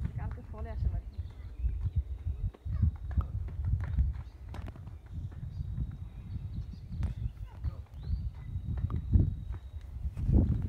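Wind buffeting a phone microphone in uneven low gusts outdoors, with faint muffled voices in the background.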